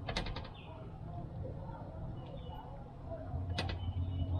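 Metal wire smoker racks rattling in a quick run of clicks just after the start, then a single sharp clink near the end, as fish ribs are laid on them. A low steady hum runs underneath.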